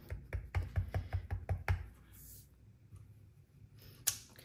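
Clear acrylic block carrying a photopolymer stamp tapped rapidly up and down on an ink pad to ink it, about a dozen light knocks in under two seconds, then stopping.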